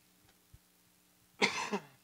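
A man coughs once, briefly, about a second and a half into an otherwise near-silent pause.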